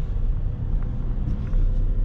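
Car engine and road noise heard from inside the cabin: a steady low rumble.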